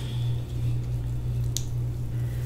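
Soft handling sounds of fingers pulling apart sauced oxtail meat, with one faint click about one and a half seconds in, over a steady low hum.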